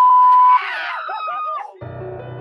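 A loud, steady, high electronic beep for about half a second, over wavering, voice-like warbling sounds. Near the end a low, sustained musical drone comes in.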